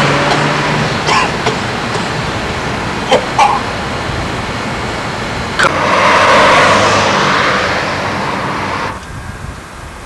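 Outdoor street traffic noise, with a few short sharp sounds in the first half. A vehicle going by swells up about six seconds in, then the sound cuts off abruptly a second before the end.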